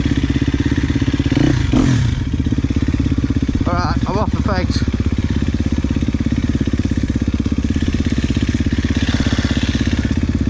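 Husqvarna enduro dirt bike engine running steadily at low revs while being ridden off-road, with a brief warbling sound about four seconds in.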